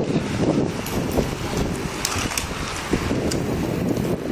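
Wind buffeting a phone's microphone as it rides along on a moving mountain bike, over an irregular rumble from the ride on pavement, with a few small clicks.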